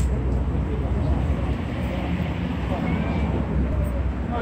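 Steady low rumble of outdoor road traffic, with faint voices in the background.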